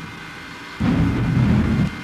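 A de-tuned cello playing one low bowed stroke, coarse and rumbling, that starts about a second in and lasts about a second after a quieter stretch.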